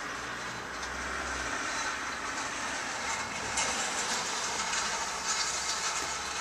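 Steady hiss of rain falling around a shelter, with a low rumble in about the first second and a half.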